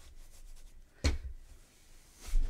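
Faint rustling and rubbing of white toy stuffing being pushed by hand down into a crocheted tube, with a single sharp knock about a second in.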